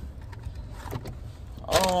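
Low, steady rumble of a car's engine heard from inside the cabin, with a few faint clicks in the middle. A voice says "um" near the end.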